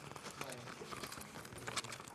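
Small spring-loaded decoupage scissors snipping through printed paper, with soft paper rustling: a few quiet clicks and crinkles.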